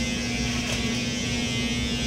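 Electric hair clippers buzzing steadily as they cut hair close to the scalp in a head shave.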